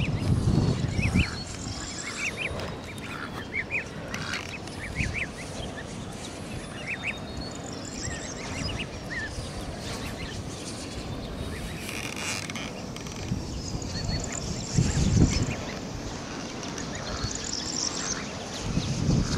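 Goslings and ducklings peeping: many short, high chirps scattered throughout, with a few gusts of wind on the microphone.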